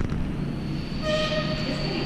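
Steady indoor background hum with a thin, high, steady whine, and a short pitched note about a second in.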